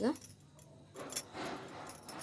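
Bangles on a wrist clinking in light, irregular jingles as the hands fold and wind wool yarn, with a cluster near the start and another about a second in.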